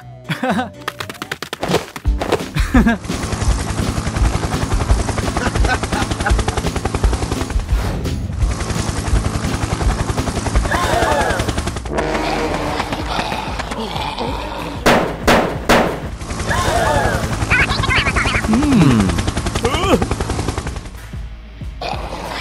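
Cartoon sound effect of sustained rapid machine-gun fire over background music, starting about two seconds in and breaking off briefly a few times, with swooping pitched sounds rising and falling in the middle and near the end.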